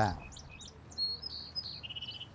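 Wild songbirds calling: a run of short high chirps, a brief clear whistle about a second in, and a buzzy trilled note near the end.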